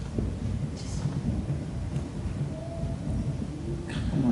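A steady low rumble fills the room. Over it come a click at the very start and a brief rustle a little under a second in, as a cloth tote bag is handled.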